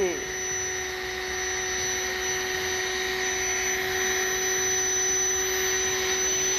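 Electric air pump running steadily with a constant whine, blowing air into an inflatable vinyl family pool.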